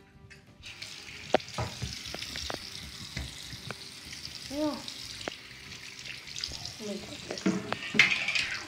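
Bathroom sink tap running, a steady splash of water into the basin starting about a second in, with scattered small knocks and clicks of hands and things at the sink.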